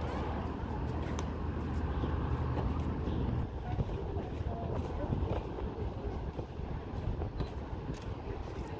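Low, steady rumble of distant road traffic, heavier for the first few seconds and then easing, with indistinct voices faintly under it.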